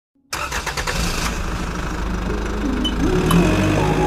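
An engine starts and runs, loud and steady, from just after the beginning. Rising musical notes come in over it about halfway through.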